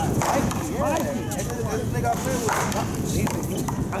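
Paddleball rally: wooden paddles hitting a Big Blue rubber ball and the ball striking a concrete wall, a string of sharp knocks, with people talking in the background.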